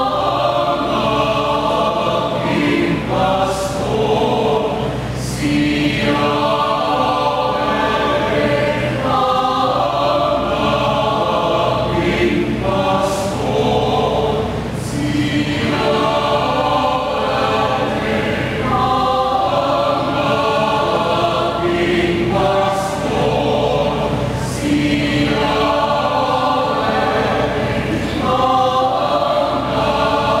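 Mixed choir of women's and men's voices singing a hymn in phrases a few seconds long, with brief pauses and crisp s-sounds between them.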